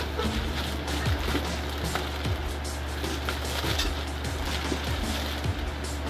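A plastic courier mailer crinkling and rustling as it is opened by hand and a plastic-wrapped item is pulled out, over steady background music.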